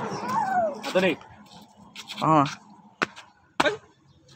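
A dog whining in several short, falling whimpers, with a few sharp clicks in the second half.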